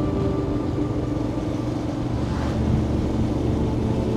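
Motorcycle engine running on the move, with a brief swell of rushing wind-like noise about halfway through.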